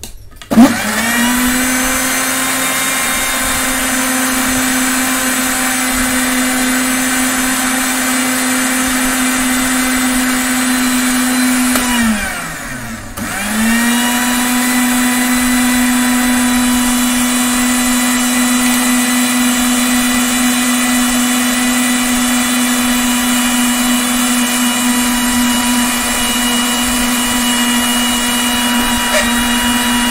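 Panasonic mixer grinder's motor starting and running steadily as it blends a protein shake with water and ice cubes in its steel jar. About twelve seconds in it is switched off and its pitch falls as it winds down, then it is switched on again about a second and a half later and runs steadily.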